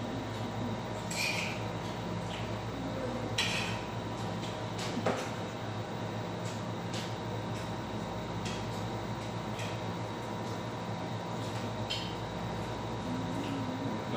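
Steady low room hum with scattered light clicks and rustles of small objects being handled, the loudest a little over three seconds in.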